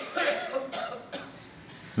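A person coughing a few times in the first second or so, fainter than the speech around it.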